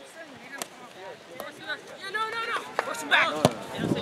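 Shouting voices of players and spectators across a youth soccer field, louder in the second half, with a few sharp thuds of the ball being kicked; the loudest comes about three and a half seconds in.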